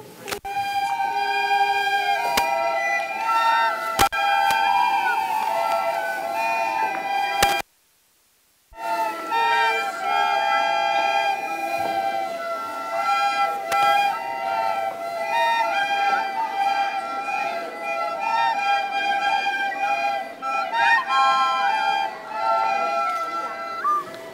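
A large group of children playing soprano recorders together, a simple tune of steady whistled notes. The sound cuts out completely for about a second a third of the way through, then the playing goes on.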